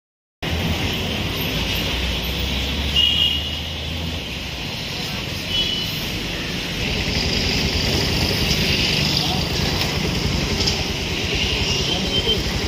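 Outdoor street ambience: steady road-traffic noise with indistinct voices, a low engine rumble that fades about four seconds in, and two short high chirps, about three and five and a half seconds in.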